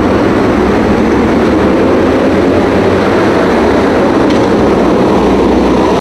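Loud, steady noise of road traffic picked up by a street surveillance camera's microphone; it cuts off suddenly at the end.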